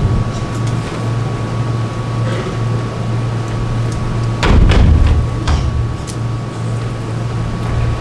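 A steady low hum with a thin constant tone above it, broken by a few knocks and thuds. The loudest knocks come about four and a half seconds in, with lighter ones just after.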